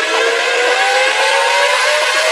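Electronic dance music build-up: a synth riser climbing steadily in pitch over a loud wash of white noise, with the bass and kick cut out.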